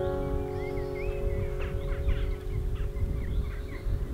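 Last acoustic guitar chord ringing out and slowly fading, while small birds chirp and whistle in short rising and falling notes, over a low rumble of wind on the microphone.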